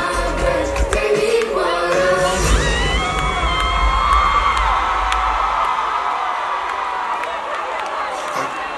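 Live band music with a heavy bass beat that stops about two and a half seconds in, followed by a crowd cheering and whooping that slowly dies down.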